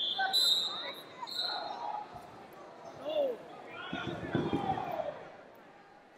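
Referee's whistle blown to restart a wrestling bout: a shrill blast right at the start and a shorter one about a second and a half in. Shouts from coaches and spectators follow in a large hall, with a few dull thuds of wrestlers' feet on the mat near the middle.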